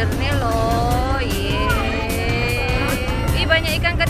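Background song: a singing voice holding a long note in the middle, over a steady beat.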